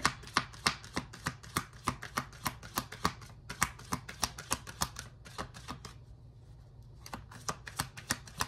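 Tarot deck being shuffled by hand, the cards snapping against each other in quick irregular clicks, several a second, easing off briefly about six seconds in.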